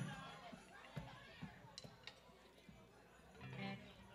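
A quiet pause in a club room: faint chatter and a few small knocks, with a brief faint voice about three and a half seconds in.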